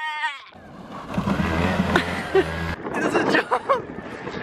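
A young man yelling and screaming with excitement, then a rough rush of wind on the microphone over a low hum from a small dirt bike. The hum cuts off suddenly, followed by a few more short yells near the end.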